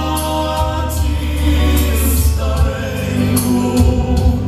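A group of voices singing a song together in held notes, over instrumental accompaniment with a steady low bass.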